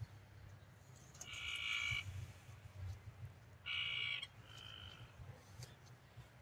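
A frog calling outdoors: two short buzzy trills, the first about a second in and the second just before four seconds, then a fainter, shorter one.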